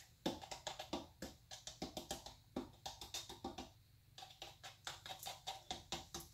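Faint, irregular light taps and clicks, a few each second, from a plastic paint cup being handled over a canvas.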